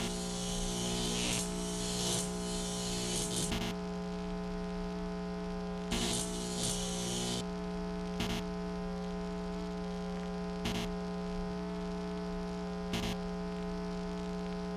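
A steady electrical hum made of several even tones. It carries two bursts of static hiss in the first half, each about one to three seconds long, and a few short crackles later.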